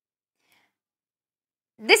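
Near silence, then a woman starts speaking near the end.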